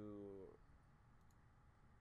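Near silence: quiet room tone, after a drawn-out spoken word trails off in the first half second.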